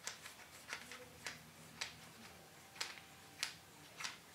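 Faint, irregular plastic clicks, about seven in all, as a threaded plastic battery carrier is screwed by hand onto the handle of an LED work lamp.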